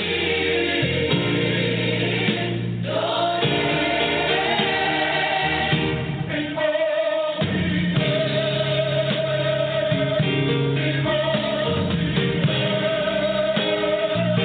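Gospel music with a choir singing.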